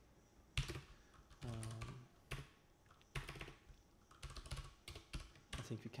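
Typing on a computer keyboard: several separate keystrokes, unevenly spaced, as a line of shader code is entered.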